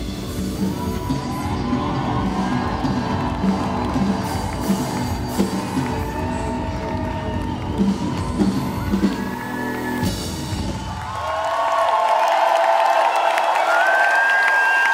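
Live band playing the closing bars of a pop song with a heavy beat; the music stops about eleven seconds in and the crowd cheers and whoops.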